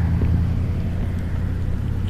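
A steady low mechanical drone with an even, unchanging pitch, like a running motor.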